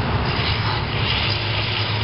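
Electric drill turning a 2-3/8-inch hole saw, cutting steadily through a boat's fiberglass hull.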